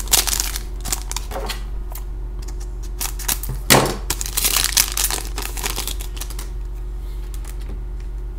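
Foil wrapper of a hockey card pack crinkling as it is torn open and the cards are pulled out, with one louder crackle near the middle; the handling stops about six seconds in. A steady low hum runs underneath.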